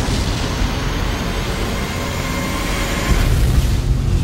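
Trailer sound design: a loud, dense rush of noise with a deep rumble underneath, swelling a little near the end.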